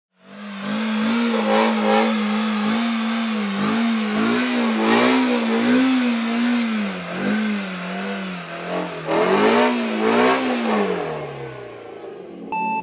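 Ford Mustang doing a burnout: the engine is held at high revs, its note wavering up and down about once a second over the hiss of spinning rear tyres. Near the end the revs drop away.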